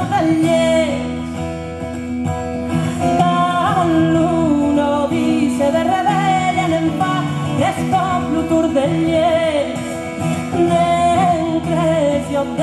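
A woman singing a slow folk song in a clear, wavering voice, accompanying herself on a strummed acoustic guitar, recorded live.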